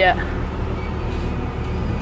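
Tractor engine heard from inside the cab: a steady low drone with cab rattle and road noise, no change in pitch.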